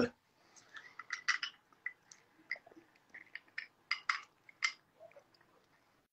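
Faint, irregular light clinks from a drinking glass with a straw, about a dozen small ticks scattered over several seconds.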